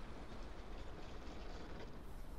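Faint steady outdoor background ambience: a low rumble under a soft hiss, with no distinct events.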